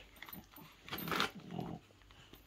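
A Cavalier King Charles spaniel snorting and snuffling as it noses into a torn Christmas gift, in two short bouts about a second in, with wrapping paper crinkling.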